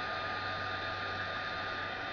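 Craft heat tool (embossing heat gun) blowing steadily, its fan motor giving an even rushing hiss with a thin high whine and a low hum. It is heating an acetate petal until the plastic goes soft enough to fold.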